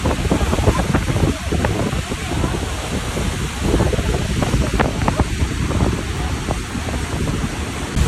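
Rushing water of Niagara's Horseshoe Falls, a loud, dense, steady noise heavy in the low end, with wind buffeting the microphone.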